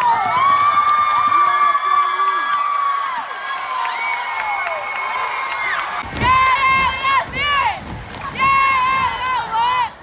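Gymnasium crowd of students cheering and screaming, with long held high shouts. About six seconds in, a few voices close by break into a fast, rhythmic shouted chant.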